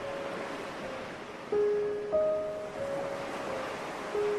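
Ocean surf washing steadily, under slow, soft music of long held notes. New notes come in about one and a half and two seconds in.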